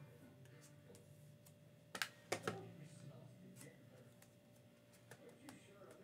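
Near-silent room tone broken by a few sharp light clicks: three close together about two seconds in, the loudest, and fainter single clicks later on.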